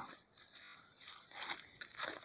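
Faint rustling in dry leaves and brush, with a few soft crunches about halfway through and near the end.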